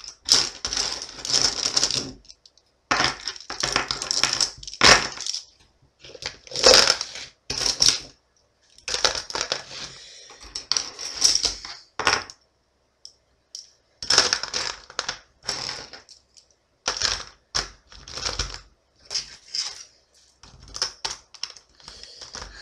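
Plastic ballpoint pens clattering against each other and a plastic tub as they are dropped and pushed in, in bursts of a second or two with short pauses between.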